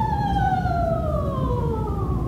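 Female operatic voice sliding slowly and smoothly down from a high sustained note with vibrato, heard from far back in the hall over a low rumble of hall noise.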